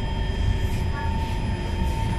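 SMRT C151 metro train heard from inside the carriage as it pulls into a station: a steady low rumble of wheels on rail with a constant high whine running through it.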